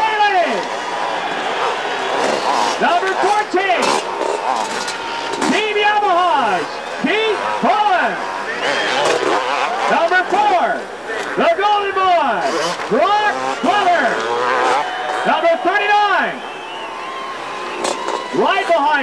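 A stadium PA announcer's voice, drawn-out and echoing, continuing the rider introductions.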